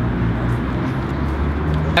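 Steady low rumble of outdoor city background noise, like traffic heard across an open park.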